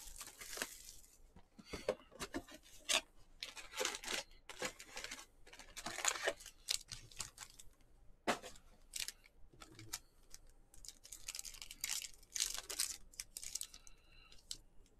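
Trading-card pack wrappers being torn open and crinkled by hand, in short irregular rips and rustles, with cards handled between them.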